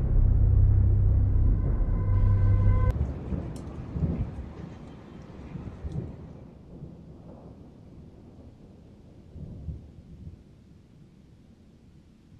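Thunder rumbling over rain, with a held low tone that cuts off abruptly about three seconds in. The rumble then fades away slowly, swelling briefly a couple of times before it dies down.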